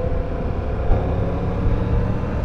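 Triumph Tiger 1200's three-cylinder engine running as the bike gathers speed, heard over steady wind and road noise on the riding microphone.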